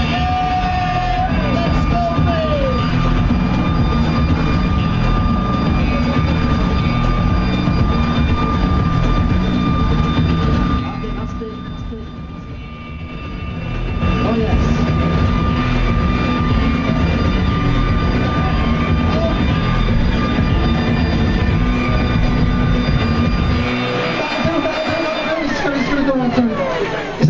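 Air blower running steadily, inflating a giant latex balloon. The sound dips about eleven seconds in and comes back a couple of seconds later.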